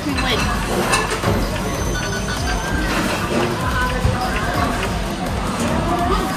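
Game music and jingle tones from a sushi restaurant's table tablet playing its prize-game animation, which decides whether a prize capsule is won. Voices and restaurant background noise run underneath.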